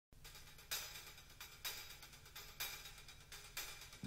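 Quiet hi-hat strokes, a pair about once a second, over a low steady hum: the soft opening of a pop track played from a vinyl record.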